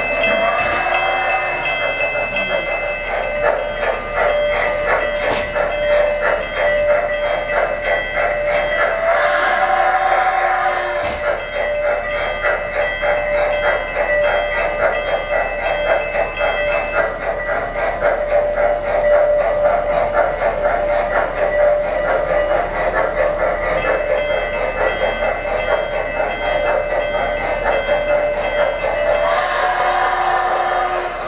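Model N&W 'J' class 4-8-4 steam locomotive's sound system running with a rapid, steady chuffing over the rumble of the track. Its whistle sounds three times: about half a second in, once midway, and again near the end.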